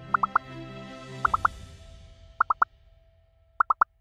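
Electronic pop sound effect: four sets of three quick rising blips, about one set a second, one for each answer option appearing, over background music that fades away in the second half.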